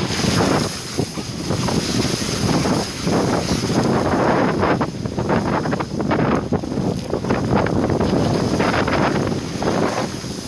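Wind buffeting the microphone of a camera mounted outside a moving vehicle, over the rumble of its tyres on a wet dirt road, with many short crackles and spatters all through.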